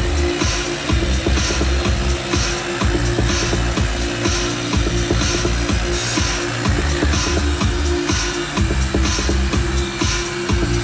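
Electronic dance music playing on a radio station.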